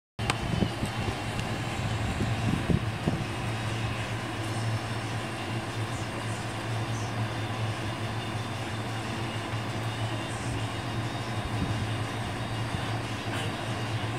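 TECO MP29FH portable air conditioner running on its highest setting: a steady rush of air with a constant low hum, a bit loud.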